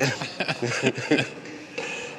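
Men's voices: laughter and brief indistinct talk.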